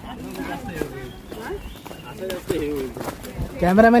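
Men's voices talking in the open, faint and scattered at first, then one voice speaking loudly near the end.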